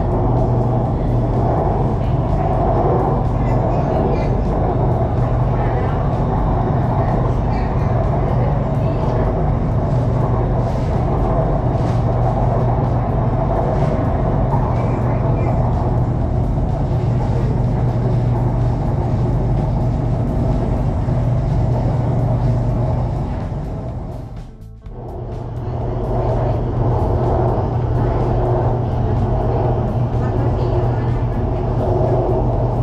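BTS Skytrain electric train running along the elevated track, heard from inside the carriage as a steady low rumble. The sound fades briefly to quiet and comes back about five seconds before the end.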